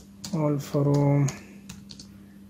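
Computer keyboard keystrokes, a few scattered taps, as a command is typed. A voice speaks briefly about half a second in, over a steady low hum.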